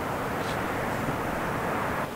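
A steady rushing noise outdoors with no distinct events. It cuts off suddenly at the end.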